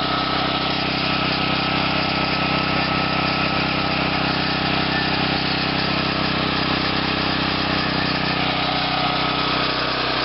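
Small single-cylinder engine running steadily at a low throttle setting, fed through a homemade plasma reactor fuel pretreater with an oversized weedeater carburetor.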